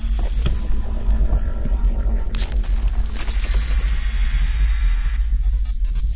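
Electronic intro music with a steady deep bass drone; a rush of noise swells up about two seconds in and dies away before the end.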